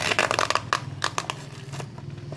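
A cardboard parcel wrapped in packing tape and plastic film crackling and crinkling as it is handled and turned over. A dense run of crackles and sharp snaps fills the first second, thinning out after that.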